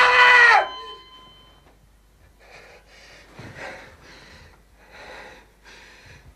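A brief loud pitched sound that rises and falls, cut off within the first second, then faint, heavy breathing in a series of breaths about every half second to a second.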